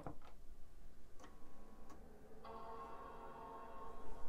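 Apple iMac G3 powering up: a few soft ticks, then about two and a half seconds in the Mac startup chime sounds as one sustained, faint chord.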